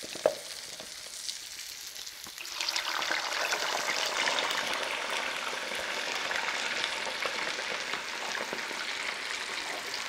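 Potato wedges deep-frying in a pot of hot oil, a dense crackling sizzle that grows louder about two and a half seconds in and then holds steady. A single sharp click just after the start.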